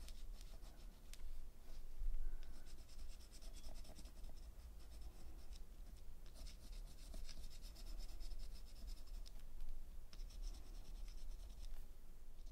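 Watercolour pencil scratching across embossed watercolour paper in stretches of short strokes, with brief pauses between them.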